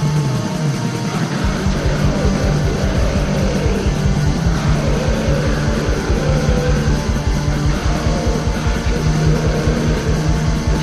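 Black metal song: distorted guitars over fast, rapid drumming and a steady bass line. The kick drum drops out for about the first second and a half, then comes back in.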